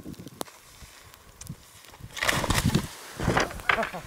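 A person's voice calling out briefly, starting about halfway through, after a fairly quiet first half with faint outdoor hiss.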